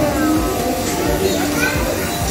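Voices and background music in a bakery café, with no distinct words.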